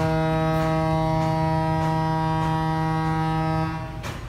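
A long, steady horn blast held at one pitch, cutting off near the end.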